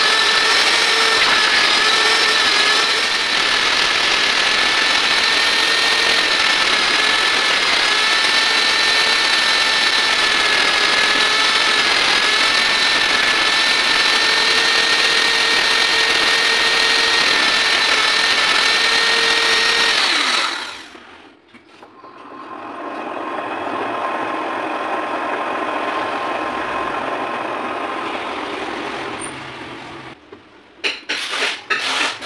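Electric die grinder with a small pink grinding stone, mounted on a lathe tool post, running with a high steady whine while it grinds a spinning tap into an endmill. About two-thirds of the way through the sound cuts out sharply, and a quieter steady running sound follows.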